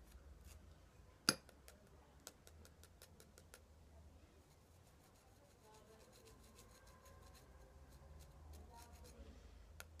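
Near silence with a few faint clicks and taps as a dried orchid seed pod is handled and tapped over a glass jar, one sharper click about a second in.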